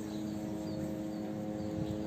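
Steady low machine hum made of several even tones, unchanging throughout, with a few faint short high chirps over it.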